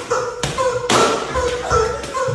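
Rubber screaming chicken toys worn on the feet squeaking in short, repeated squawks as the players step on them, mixed with sharp taps and thuds of feet on the tiled floor.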